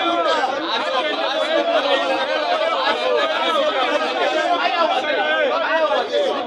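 Speech only: a man talking without pause, with other voices overlapping his.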